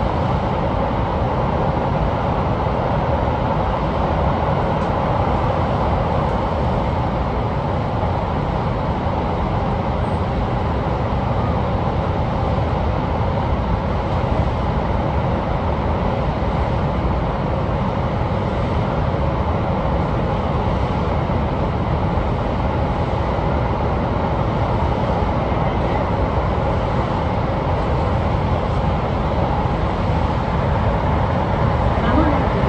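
Sotetsu 20000 series electric train running at a steady speed through a tunnel, heard from the driver's cab: a constant rumble of wheels and running gear on the rails.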